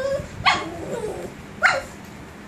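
A small puppy giving two short, high-pitched yips about a second apart, the barking of a jealous puppy wanting attention.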